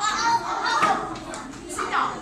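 Young children chattering and calling out together, several voices at once.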